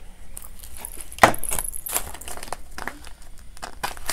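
Paper banknotes and a clear plastic cash envelope rustling and crinkling as cash is handled, with scattered small clicks and one sharp click about a second in.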